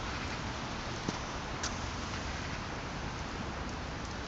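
Steady outdoor hiss of wet snow and sleet coming down, with two faint ticks about one and one and a half seconds in.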